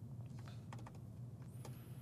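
Faint computer keyboard keystrokes, a few scattered taps, over a low steady hum. A faint high-pitched whine comes in about one and a half seconds in.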